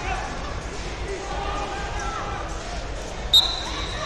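Murmur of many voices echoing through a large hall, with one short, loud, high-pitched whistle blast a little over three seconds in.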